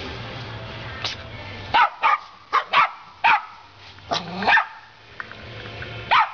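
Small dogs barking: a run of about eight sharp, high-pitched yaps, spaced irregularly, from about one second in to past the middle, over a low steady hum at the start.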